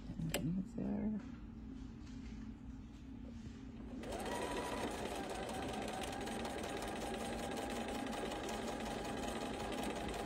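Bernina virtuosa 153 sewing machine stitching a straight seam through quilt fabric. Quieter with a few clicks at first, then about four seconds in it starts running steadily at speed and keeps going.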